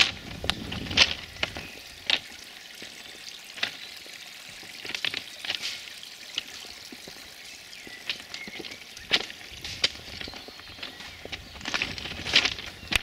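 Footsteps crunching on the crushed-stone ballast of a railway track, irregular crunches about once a second.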